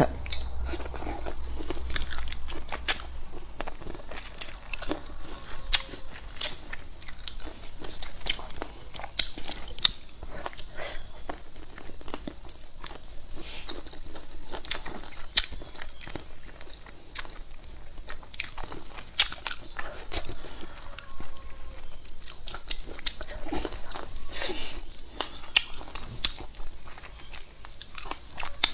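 Close-up eating sounds of a person biting and chewing pickled chicken feet: many short, sharp clicks and crunches with wet chewing between them, irregular throughout.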